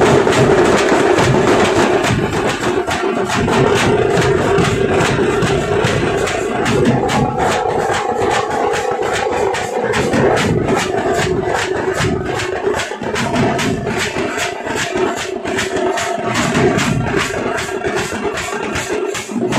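Tamate drum troupe playing a loud, fast beat: large drums on stands and strapped hand-held drums struck with sticks in rapid, even strokes over a steady ringing drum tone.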